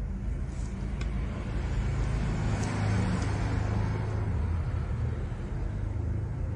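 Low rumbling background noise with a hiss above it, swelling about halfway through and easing off again.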